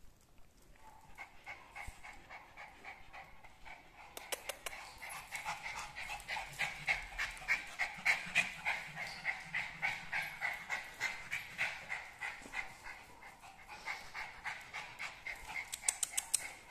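A small dog panting rhythmically, about three to four breaths a second. The panting starts faintly and grows louder about four seconds in.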